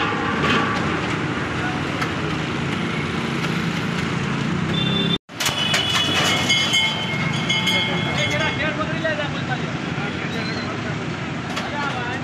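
Backhoe loader's diesel engine running under a crowd's voices. After an abrupt cut about five seconds in, a burst of sharp clattering and cracking comes as the bucket pushes the shrine's steel frame and masonry over.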